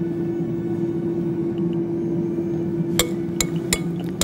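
A metal spoon clinking against a glass mixing bowl about four times near the end, as a thick yogurt mixture is spooned into it. A steady low hum of soft background music runs underneath.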